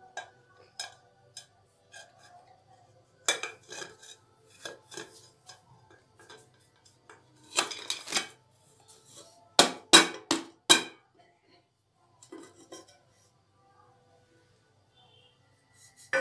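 A ceramic plate clinking and scraping against a metal cake tin as the tin is turned out onto it, then four sharp knocks on the upturned tin, the loudest sounds, a little after halfway, to free the cake.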